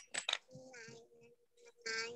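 A few soft clicks and taps as a number piece is handled on a foam number-puzzle board and the board is lifted, under faint children's voices.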